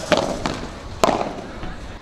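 Padel ball struck by padel rackets during a rally: two sharp pops about a second apart, over steady outdoor background noise.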